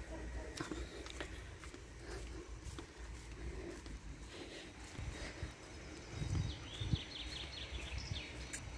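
Quiet outdoor ambience: a steady low rumble with scattered clicks and thumps of a handheld phone being moved, and a brief run of high chirps near the end.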